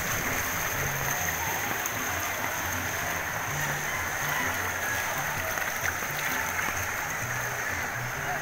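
Floodwater sloshing and churning steadily around the legs of people wading through it, with music underneath carrying a low, shifting bass line.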